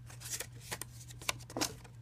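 Paper cards and packaging rustling and flicking as they are handled by hand, in a string of short crisp rustles over a steady low hum.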